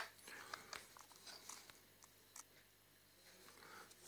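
Near silence with a few faint, scattered clicks and taps of a small plastic USB card reader being handled in the fingers.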